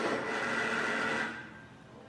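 Small vibration motor buzzing against a ceramic bowl: one buzz lasting a little over a second that stops suddenly. A single buzz is the cheating device's signal for an odd count of coins.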